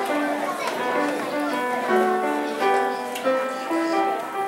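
Upright piano played by a child: a steady flow of single notes over lower accompanying notes, changing several times a second.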